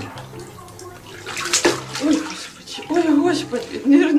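Bathwater splashing as a cat moves about in a bathtub, with a sharp splash at the start and a burst of louder splashing about a second and a half in.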